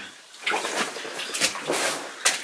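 Footsteps crunching and scuffing on the rocky floor of a mine tunnel, in a few uneven bursts.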